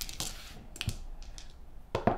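Small dice thrown onto a gaming table, clattering as they land in a few scattered light clicks, with a sharper click near the end as another die lands.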